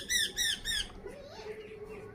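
A parakeet calling: a rapid run of loud, harsh squawks, about four a second, each falling in pitch. The run stops a little under a second in.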